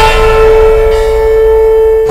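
A single loud note from the background score, held steady at one pitch with its overtones.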